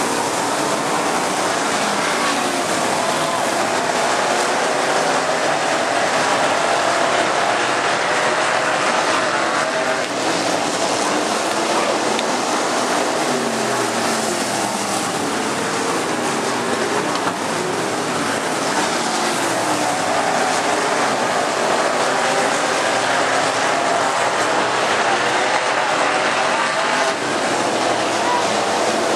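A field of dirt-track race cars running laps together. Many engines overlap in a continuous loud sound, their pitches rising and falling as the cars go through the turns and down the straights.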